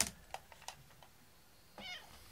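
A few sharp clicks, the loudest right at the start, then a short, wavering meow from a domestic cat near the end.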